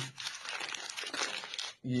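Paper butter wrapper crinkling and rustling as a block of butter is handled and unfolded in the hands: an irregular, dense crackle lasting about a second and a half.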